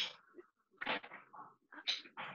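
Scattered short noises coming through unmuted microphones on an online call, some with a pitched, yelping edge: stray background noise from the participants' open mics.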